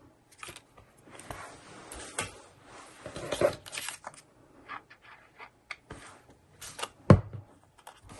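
Paper rustling and crinkling as a paper cutout is handled and glue is applied from a plastic bottle, with small clicks and scrapes. About seven seconds in, a single sharp knock as the glue bottle is set down on the wooden table.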